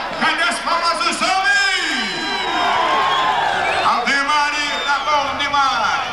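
Rodeo announcer's voice shouting long drawn-out, wordless calls over crowd noise, with one call held for about two seconds in the middle.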